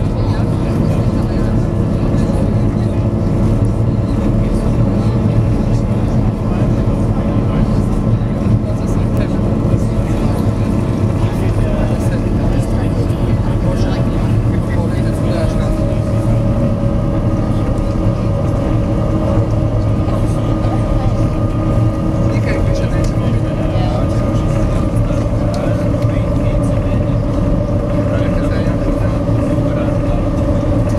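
SeaBus passenger ferry's engines running steadily under way, a loud, even, low drone with several steady tones, heard from on board; a higher tone joins about halfway through.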